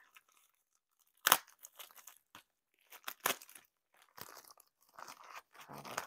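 Wrapping being pulled off an item by hand: intermittent crinkling and crackling, with a sharp crunch about a second in and another about three seconds in.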